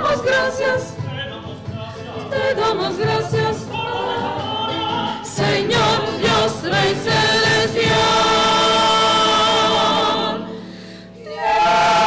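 Mixed choir of men's and women's voices singing in harmony. It holds long notes in the second half, breaks off briefly about a second before the end, and comes back in loudly.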